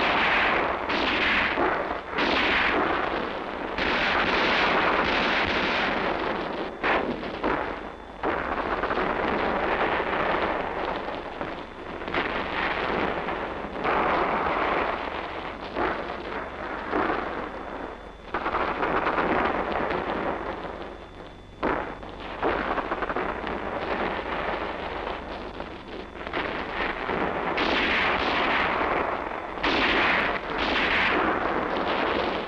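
Heavy, sustained small-arms fire from a squad of rifles, many shots overlapping into an almost continuous racket, with a couple of short lulls.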